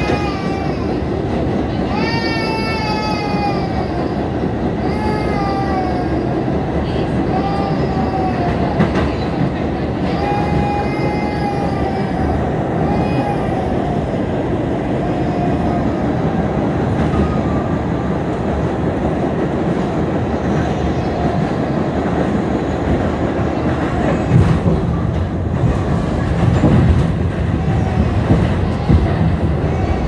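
New York City subway car running on the tracks, a steady rumble and rattle that grows heavier in the bass over the last few seconds. Over the first half a child cries in repeated rising-and-falling wails every couple of seconds, fading out about halfway through.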